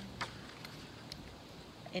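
A paperback picture book's page being turned by hand, with one short paper click just after the start and a few faint ticks, over a low, steady outdoor background. A woman's voice begins right at the end.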